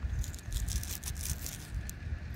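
Faint low rumble of wind on the microphone, with scattered light rustles and clicks as a gloved hand handles a dug coin.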